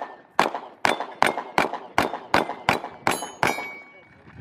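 Rapid pistol fire, about nine shots at two to three a second, with steel targets ringing after the hits. The firing stops about three and a half seconds in.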